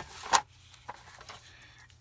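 A sliding paper trimmer and a paper card being pushed into place on a desk. There is a short scrape and a knock in the first half second, then faint rustling.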